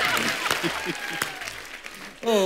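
Studio audience applauding and laughing after a joke, dying away over the two seconds.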